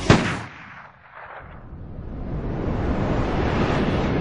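A single heavy boom, a trailer-style impact hit, cuts off the rock music right at the start and dies away over about a second; a low rumbling drone then swells up gradually.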